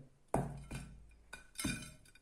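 A frozen pizza, hard as ice, knocking and clattering against a plate as it is handled and lifted: several sharp knocks with a short ring after each.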